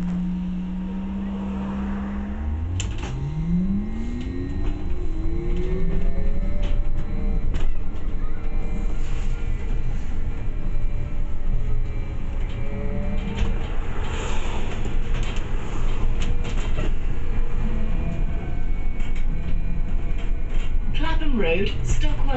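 Interior of a double-decker bus pulling away: a steady hum gives way, about three seconds in, to a drive whine rising in pitch as the bus accelerates, with further rising whines later as it speeds up again, over constant road and cabin rumble. A recorded onboard announcement begins right at the end.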